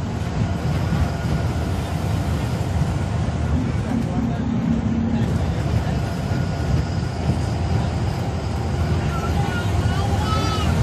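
Ashok Leyland Viking bus's diesel engine running at cruising speed, with steady road and wind noise, heard from inside the passenger cabin.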